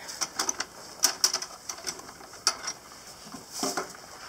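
Irregular sharp clicks and light taps, several close together in the first second and a half, then a few more spaced out.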